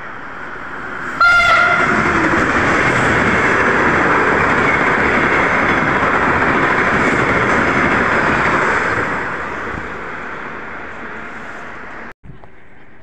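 Siemens Velaro RUS "Sapsan" high-speed electric train passing at about 138 km/h. A brief horn note sounds a little over a second in, then a loud, steady rush of air and wheels holds for several seconds and fades away over the last few seconds as the train goes by.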